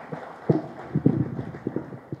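A handheld microphone being handled and set down: about ten irregular, low knocks and thumps, the loudest about half a second and one second in.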